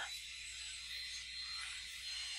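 Faint steady background hiss with a low hum and a thin high tone: the microphone's room tone in a pause between speech, with no distinct sound events.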